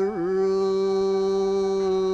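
Traditional Japanese dance music: a singer holds one long low note in a chanting style, with a brief dip and scoop in pitch just after it begins.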